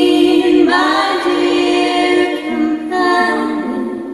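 Three women's voices singing close harmony unaccompanied, holding long notes, with the chord shifting about a second in and again near three seconds, fading toward the end.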